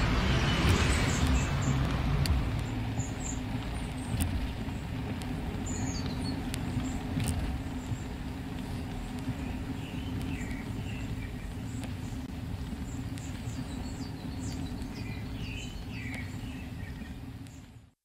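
A motor vehicle running steadily with a low rumble, a little louder in the first couple of seconds. Faint scattered bird chirps sound over it.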